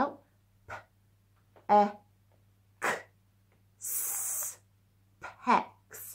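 A woman sounding out the word 'pecks' one sound at a time, with pauses between: a short 'p', an 'e', a 'k', then a drawn-out 's' hiss about four seconds in, and the word spoken again near the end with a falling pitch.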